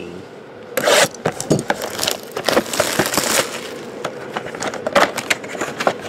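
Plastic shrink wrap being torn and crinkled off a cardboard trading-card box: a sharp tear about a second in, then crackling and scraping with many small clicks as the wrap is stripped and the box is opened.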